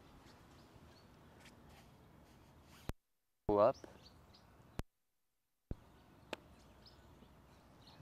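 Faint outdoor background hiss with a few faint bird chirps. It is broken twice by short stretches of dead silence that begin and end with sharp clicks at edit cuts.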